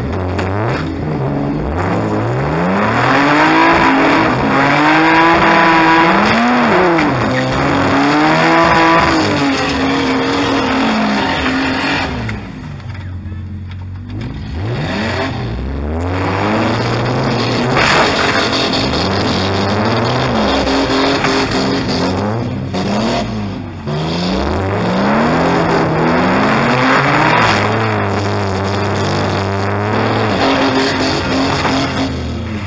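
Car engine of a stripped demolition-derby car revving up and falling back repeatedly as it is driven, heard from inside the gutted cabin. It eases off for a couple of seconds about halfway through, then picks up again.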